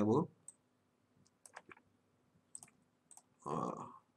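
A scatter of separate sharp clicks from a computer mouse and keyboard, single clicks and short pairs spread over about three seconds.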